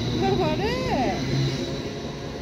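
Electric train running beside the platform: a steady low rumble with a thin, high, steady whine. About half a second in, a short high voice rises and falls over it.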